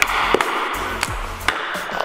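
Background music over the sharp clacks of a hockey stick and puck on a Super Deeker stickhandling trainer board, a few taps about every half second.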